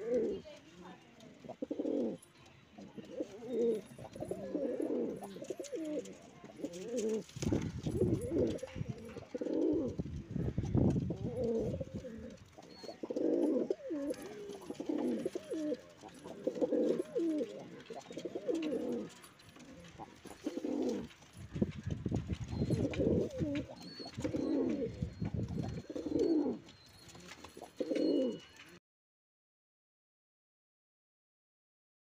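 Domestic pigeons, Andhra high-flyers, cooing over and over in a wooden loft box, one low burbling coo phrase after another every second or two. The sound cuts off suddenly shortly before the end.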